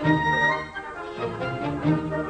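Orchestral film score, with bowed strings carrying a sustained melody.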